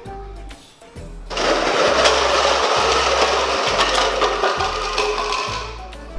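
A tall stack of plastic cups knocked over by a baby's ride-on toy car, the cups clattering down onto a stone floor in a dense rush of clatter that starts about a second in and lasts about four seconds, over background music.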